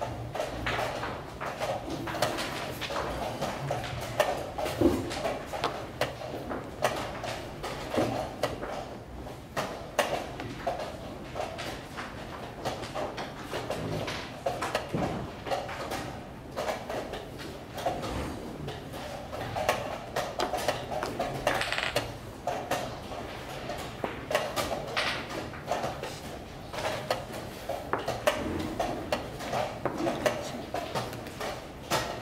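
Wooden chess pieces clacking onto boards and chess clocks being tapped during blitz play, many quick sharp clicks throughout, over a steady murmur of voices in a large hall.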